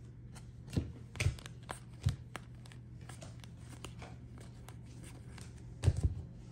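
Stack of trading cards being flipped through and slid across one another in the hands, giving scattered soft flicks and clicks, the sharpest near the end, over a steady low hum.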